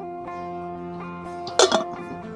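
Background music of plucked guitar notes. Near the end, a short, loud burst of noise cuts in over it.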